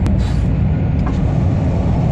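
Truck engine and road noise heard inside the cab while driving on the highway, a steady low drone. There is a short click right at the start and a fainter one about a second in.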